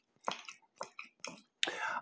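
A knife and fork clicking and scraping against a plate in several short, separate taps while cutting chitlins.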